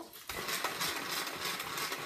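A Tupperware pull-cord chopper being worked: the cord is pulled and the gears spin the blade with a fast, rattling whir. The blade is seated properly in the lid.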